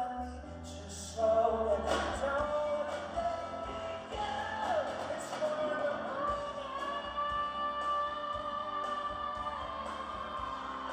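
Live male vocal with grand piano accompaniment: a sung melody line that settles into one long held note over the last few seconds.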